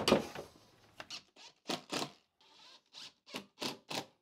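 A knock, then a quick run of short scraping strokes, about three a second, with no motor tone.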